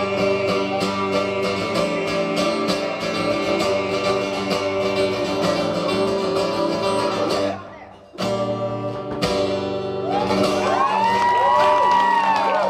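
Steel-string acoustic guitar strummed in a steady rhythm with a male voice singing, the end of the song. The strumming cuts off sharply about two thirds of the way through, then a couple of final chords ring out. Near the end the audience starts whistling and cheering.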